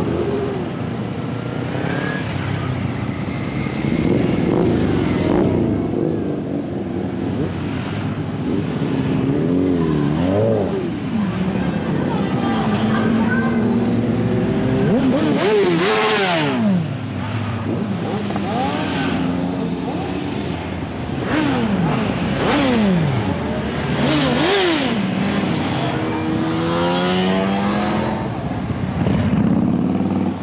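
Engines of many motorcycles riding past close by one after another, each revving up and dropping in pitch as it goes by.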